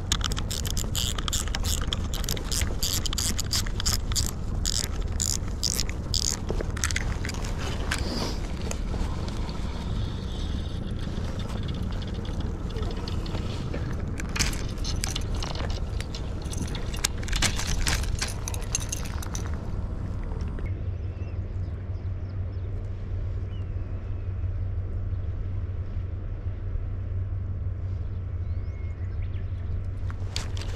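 Spinning reel being handled: clicking and rattling of its spool, bail and handle for about the first twenty seconds, then only a steady low rumble.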